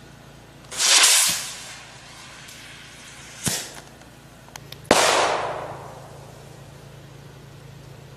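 A black-powder model rocket fired from a shoulder-held launcher tube: a short rushing whoosh about a second in, then a sharp crack about three and a half seconds in and a louder bang about five seconds in that fades out over about a second.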